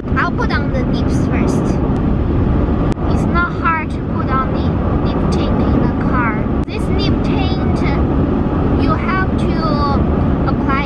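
Steady low road and engine rumble inside a moving car's cabin, with short snatches of a woman's high voice now and then.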